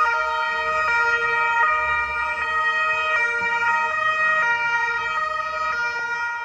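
Two-tone siren of a Carabinieri patrol car, alternating steadily between a high and a low note about every three-quarters of a second.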